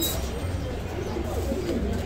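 Caged domestic pigeons cooing, over a low steady hum.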